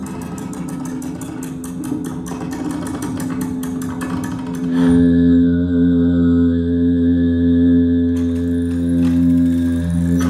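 Soundtrack of a video artwork: rapid, even clicking over a low drone, then about five seconds in the clicking stops and a louder, steady drone of several layered tones takes over.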